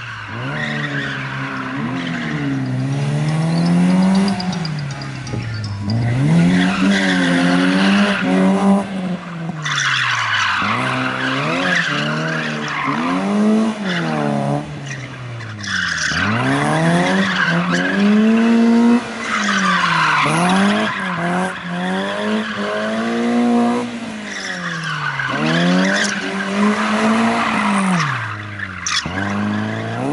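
Rally car engine revving hard and falling back again and again, roughly every two to three seconds, as the car is thrown around cones on paving. Its tyres squeal through several of the slides.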